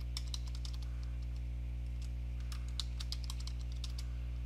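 Computer keyboard being typed on: a run of light, irregularly spaced key clicks over a steady low hum.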